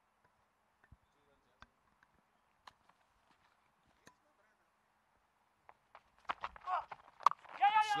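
Near silence for about six seconds, broken only by a few faint scattered clicks. Near the end comes a man's exclamation and one sharp knock, then speech begins.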